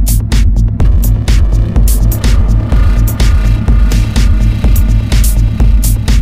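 Dark minimal techno: a heavy, pulsing bass and kick at a steady dance tempo of about two beats a second, with crisp hi-hat ticks on top. A sustained synth tone comes in about two seconds in.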